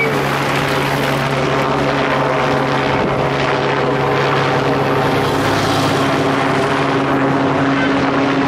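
Steady engine drone from the race convoy: support cars and a motorcycle following the cycling peloton pass close by at low speed.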